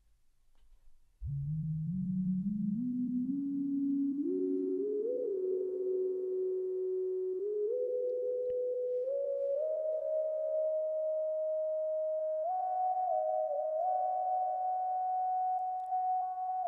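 PlantWave 'Signal' sound set: a single sine-wave synth tone sonifying the plant's electrical signal. It starts about a second in and climbs in small steps from low to high, with a few short wobbles near the top.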